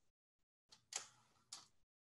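Near silence on a video call, broken by two faint, brief soft noises about a second and a second and a half in.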